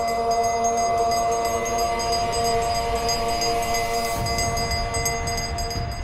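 Background music: a sustained droning chord of several steady held tones, with a rapid high metallic ticking above it and a low rumble beneath. The drone cuts off shortly before the end.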